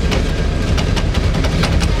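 Cog railway train running on its toothed rack rail, heard from aboard: a steady low rumble with irregular metallic clicks and clanks.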